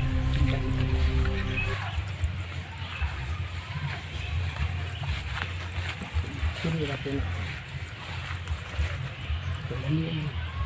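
Background music that cuts off about two seconds in, followed by the outdoor sound of footsteps brushing through rice plants over a low rumble, with a short voice twice.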